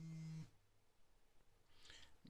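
A Motorola Moto G's vibration motor buzzing once for about half a second against a wooden desk: the short vibration that signals the phone is shutting down.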